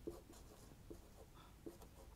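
Faint, short strokes of a marker pen writing on a whiteboard.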